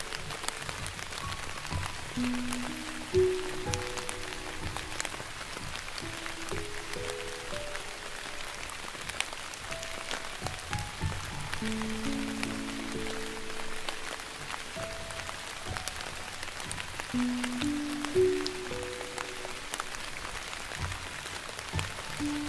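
Slow, soft piano music, a few held notes at a time, over a steady hiss of falling rain.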